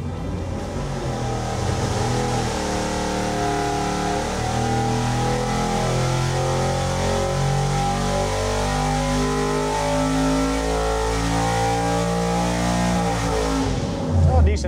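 Ford Windsor small-block V8 with a tunnel-ram intake and a single 950 CFM four-barrel carburetor, run at wide-open throttle on an engine dyno through a 4,500 to 7,000 rpm sweep. The engine note climbs steadily with rpm and cuts off just before the end.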